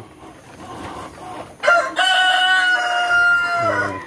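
A rooster crowing once, starting a little under two seconds in: a short opening note, then a long held note of nearly two seconds that drops away at the end.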